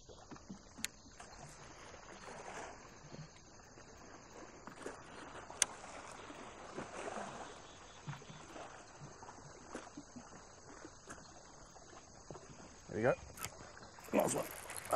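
Quiet open-water ambience on a fishing boat: faint steady water and air noise, with one sharp click about halfway through and a short rising voice-like sound near the end.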